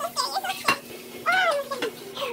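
High, nervous wordless squeals and whimpers from a young person, several short rising-and-falling cries with a longer one in the second second. A single sharp click sounds a little past half a second in.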